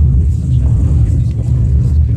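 Loud, steady, deep rumble from an indoor percussion ensemble's performance, nearly all of it in the bass with no distinct strikes.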